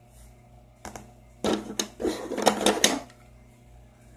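Quick plastic clicks and clatter of a DohVinci styler tool being picked up and worked on a table, in a run of sharp knocks from about one and a half to three seconds in.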